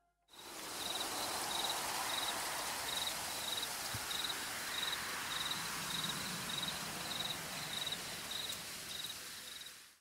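A cricket chirping steadily, about two short high chirps a second, over a steady hiss of night ambience that fades in just after the start.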